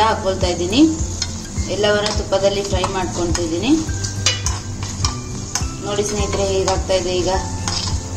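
A metal spoon stirring and scraping chopped nuts and raisins frying in ghee in a small kadai, with a light sizzle and repeated clicks of the spoon against the pan. A melody of background music plays underneath.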